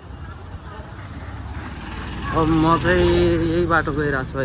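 Street traffic with a low engine rumble that grows louder, and from about halfway a loud, drawn-out call from a voice that holds one pitch for about a second.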